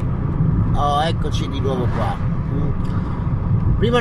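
Steady low rumble like road noise inside a moving car, under a man's voice speaking a few words about one and two seconds in.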